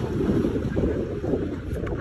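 Low, fluctuating rumble of wind buffeting the microphone.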